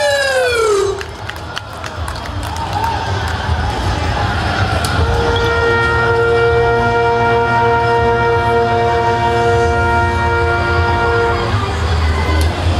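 Applause and crowd noise, then a brass quintet of trumpets, trombone and tuba sounding one long sustained chord, entering about five seconds in and held for about six seconds before releasing just before the end.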